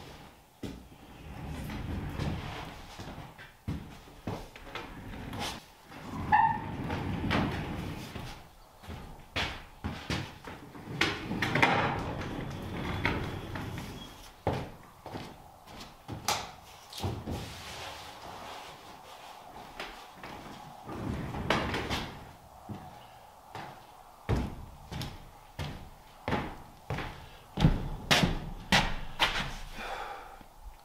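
A homemade dolly on stiff, ungreased metal casters, loaded with a stack of four-by-eight sheets, being shoved across a wooden floor in fits and starts: low rumbling of the casters rolling, broken by repeated knocks and clunks. It is hard to roll because the casters have never been greased or oiled and don't swivel easily.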